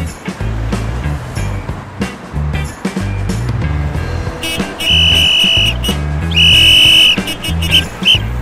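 Background music with a steady, repeating bass beat. About five seconds in, a shrill whistle sounds two long, loud blasts, then two short ones near the end.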